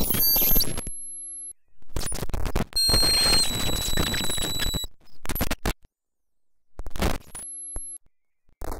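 Chaotic multi-voice electronic oscillation from a homemade circuit reanimating a dead Neotek circuit board through nudged fishing-weight contacts. Harsh noisy bursts and glitches switch on and off abruptly, with sudden cuts to silence. Steady whistling high tones run through the middle, and a low steady hum is held for about half a second twice.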